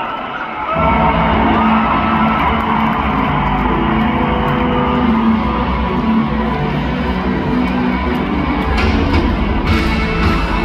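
A live rock band starts playing about a second in, with electric guitars and bass. It is heard from the seats of a large arena.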